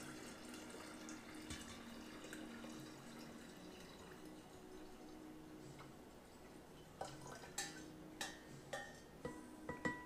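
Sweet tea trickling faintly from a stainless saucepan into a glass jar of liquid. From about seven seconds in, a spatula scrapes and clicks against the inside of the metal pan several times, working out undissolved sugar.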